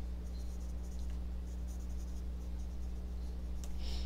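Faint, scattered scratchy rustles of tarot cards being handled, over a steady low hum.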